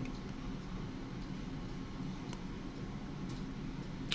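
Faint, steady room tone: a low hum with a light hiss and no distinct events.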